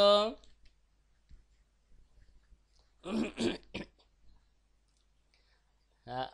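Speech only: the end of a spoken phrase at the start and a short, quieter spoken fragment about three seconds in, with a few faint clicks in the pauses.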